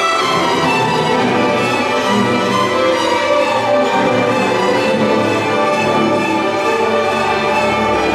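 String orchestra of violins, cellos and double bass playing a loud, sustained passage at an even volume.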